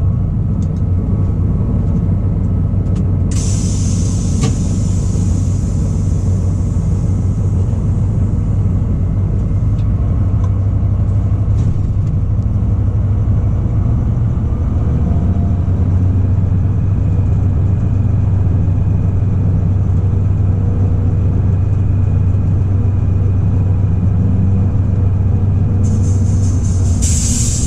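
Class 294 diesel-hydraulic shunting locomotive's engine running steadily, heard from the cab. A long hiss starts about three seconds in and fades away over several seconds.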